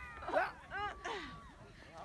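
High-pitched human cries and squeals: a few short rising-and-falling shouts and one longer held call near the middle.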